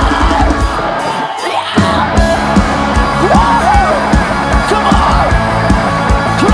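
Live rock band playing loud, with drums, bass and electric guitar and the singer's voice over them. The band drops out for a moment about a second in, then comes back in on a steady beat.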